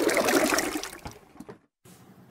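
Liquid poured from a bucket into a plastic basin, a splashing pour that tapers off after about a second.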